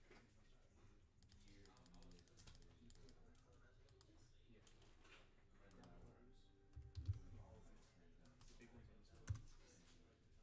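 Faint computer keyboard typing and mouse clicks, with a couple of soft low thumps later on.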